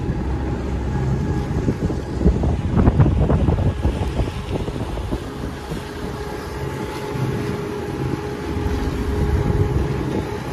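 Wind buffeting the microphone and water rushing past the hull of a catamaran under way, with a low steady hum underneath. The wind is gustiest and loudest around three seconds in.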